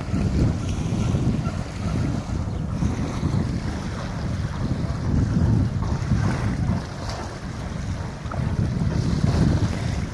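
Wind buffeting the microphone in an uneven low rumble, with small waves lapping at the shore underneath.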